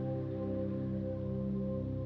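Crystal singing bowls sounding in sustained, overlapping tones that beat and pulse slowly, with no attack or break.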